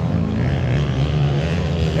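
Dirt bike engines on a motocross track, a steady drone with one bike swelling louder through the middle.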